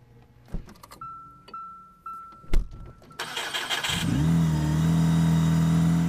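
Car start-up sound effect: a few clicks and a chime repeating about twice a second, a sharp click, then an engine starting about three seconds in and running steadily.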